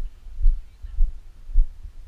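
Dull low thuds about twice a second: the running strides of the wearer of a body-mounted camera, jolting the camera with each footfall on grass.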